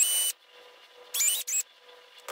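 Cordless drill with a micro drill bit boring through a small plastic LEGO lightsaber hilt in short trigger pulls. There are two brief bursts, each a whine that climbs quickly in pitch as the motor spins up: the first cuts off just after the start, the second comes about a second in.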